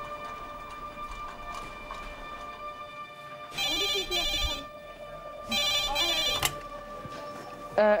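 Hospital desk telephone with a red handset ringing twice, each ring about a second long and two seconds apart, over soft background music: an incoming ambulance pre-alert call that is answered just after.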